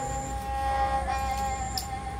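Serja, a sarinda-type bowed folk fiddle, holding one long, steady note under the bow.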